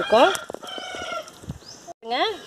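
A rooster crowing, one held call lasting about a second that drops off at its end.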